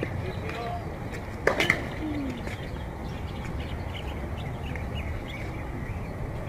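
A quick cluster of two or three sharp tennis-ball knocks on a hard court about a second and a half in, over a steady low outdoor rumble.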